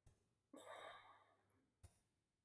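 Near silence, with a faint exhaled breath about half a second in and one faint keyboard click near the end.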